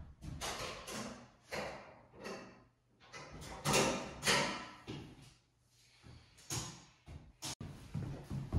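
Irregular scuffs and knocks of people moving and handling things in a room, several in a row, loudest around the middle, with a sharp click near the end.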